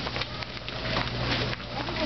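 Wire shopping cart rattling and clattering as it is pushed across a hard store floor: a dense run of small metal knocks and rattles.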